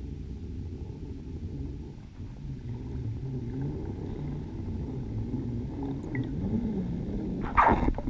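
Underwater recording at a freediving line 20 m down: a steady low rumble with faint wavering tones, then near the end a brief loud burst of noise as the freediver reaches the line right beside the camera, releasing small bubbles.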